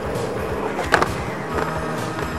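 Skateboard wheels rolling on asphalt, then a sharp clack about a second in as the trucks slap onto the curb to start a backside slappy grind. Music with a steady beat plays throughout.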